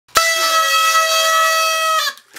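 Several paper party blowers (blowout noisemakers) blown together, giving a loud, steady, buzzy honk in two close pitches. It starts abruptly just after the beginning and holds without a break until it stops at the end.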